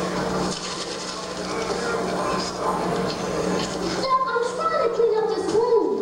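Indistinct voices over a steady low hum, with one voice gliding down in pitch just before the end.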